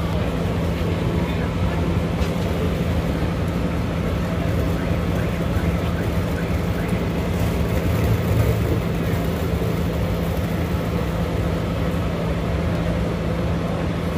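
Parked coach bus idling beside its open door: a steady low engine hum with one constant tone, over a general noise of voices and movement.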